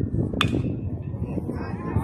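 A single sharp crack of a bat hitting a pitched baseball about half a second in, with a brief ring, over the steady chatter of spectators.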